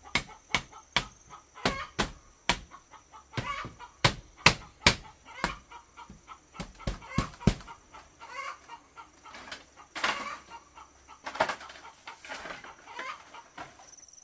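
Sharp knocks on the bamboo frame as a woven bamboo wall panel is fitted, about two a second for the first half and sparser after that, with chickens clucking.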